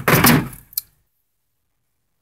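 A brief clunk and rattle of the swamp cooler's plastic grille and housing being handled, fading out within the first second, then dead silence.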